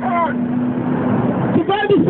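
A man's voice, amplified through a handheld microphone, preaching with drawn-out vowels; it breaks off briefly about half a second in, leaving a wash of outdoor street noise, and resumes near the end.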